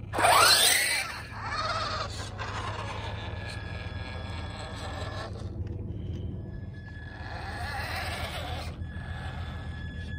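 Electric motor and gears of a Radio Shack Off Roader RC truck whining as it pulls away hard, loudest in the first second with the pitch sweeping up and down. It keeps running more quietly until about five seconds in, then swells again near the end.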